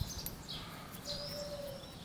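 Small birds chirping: a few short high chirps, then a longer high note held for nearly a second, with a lower whistled note under it.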